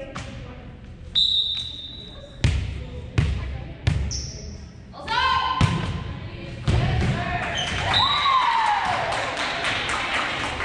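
Volleyball sounds in a reverberant gym: a short referee's whistle about a second in, the ball thudding on the hardwood floor and being struck several times, then a second whistle near the end. Players' shouts and cheering follow the second whistle.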